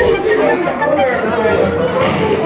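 Several voices talking over one another, with no words clear.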